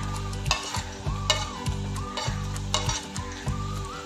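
A metal spatula scrapes grated ginger off a plate into a cast-iron kadai of frying onions, with sizzling and several sharp clicks of metal on the plate and pan.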